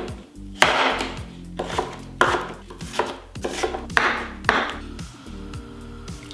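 A kitchen knife slicing through raw peeled potatoes on a wooden cutting board: about eight crisp cuts at an uneven pace, each ending in a knock of the blade on the board, stopping about five seconds in. Background music plays underneath.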